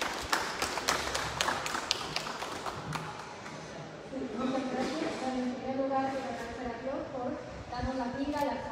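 Brief, sparse applause from a small group of people, individual claps distinct, dying away about three seconds in.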